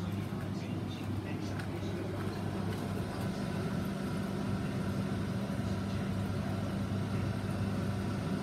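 Saltwater aquarium pumps, such as the wave maker powerhead, running with a steady low hum.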